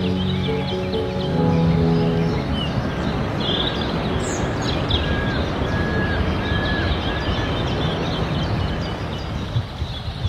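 Music with sustained low tones ends about two and a half seconds in, leaving a steady rush of stream water and the high, rapid chirping of dipper nestlings begging to be fed, with a few short whistled calls in the middle.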